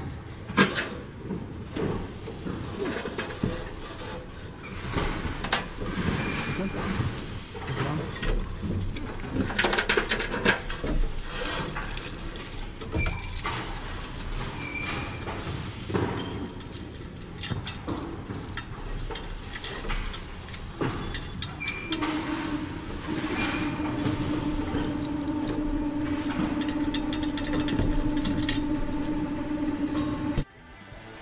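Metal chain and rigging hardware clinking and knocking as chains are hooked onto a big ceiling fan's motor unit. A steady machine hum starts about two-thirds of the way through and runs on.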